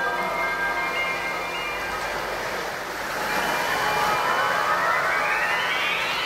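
City pop recording in an intro passage: held synth notes fade into a swelling whoosh of noise with a tone gliding steadily upward over the last few seconds, building toward the band's entry.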